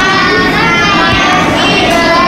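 A group of children reading aloud together in a drawn-out, sing-song chant, many voices overlapping.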